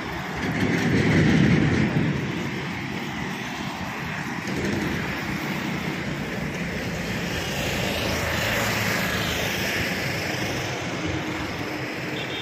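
Road traffic on a wide highway: a small goods truck passes close, loudest about a second or two in, then a steady mix of engine rumble and tyre noise that swells again a little past the middle.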